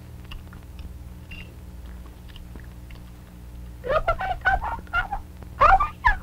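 Baby-like, wordless puppet voice babbling and warbling with quick up-and-down pitch glides, starting about four seconds in. Before that there is only a steady low hum with a few faint clicks.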